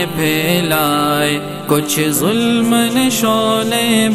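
Male voice singing an Urdu naat, drawing the words out in long held notes that glide from one pitch to the next.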